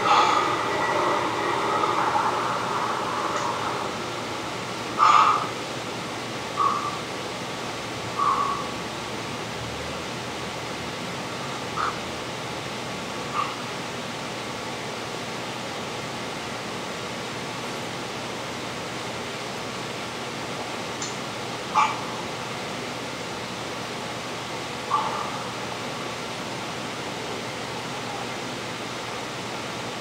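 Steady hiss of room noise, a little louder for the first few seconds, broken by about seven brief short sounds spaced several seconds apart.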